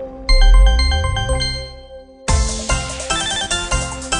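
White Rabbit online slot game sounds: a tinkling run of bell-like chime notes over a low boom, fading away, then a little past halfway a loud, fast-pulsing chiming win tune starts up as the big-win coin shower and win counter begin.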